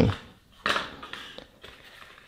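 Small cardboard box being picked up and handled, with a few faint scrapes and light taps.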